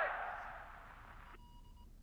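Electronic sound effect: a hissing swell with warbling tones that fades and cuts off sharply about one and a half seconds in, leaving faint, steady, beep-like tones.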